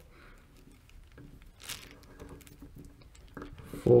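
Faint small clicks and rustling as a screwdriver bit turns the top adjusting screw of an Aisin AW55-50SN transmission solenoid through one full turn, with a brief rustle about halfway through.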